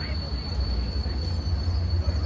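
Train running past with a steady low rumble, over a thin, constant high-pitched whine.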